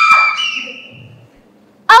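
A child's high-pitched scream, held steady for about a second and then tailing off: the hysterical reaction to news of a death.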